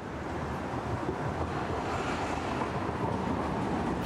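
Steady city street noise, the hiss of traffic on wet roads, growing slightly louder over the few seconds.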